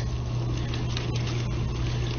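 A steady low hum under a hiss of noise, with a few faint clicks.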